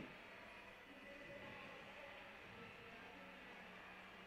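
Near silence: faint room tone with a faint, steady low hum.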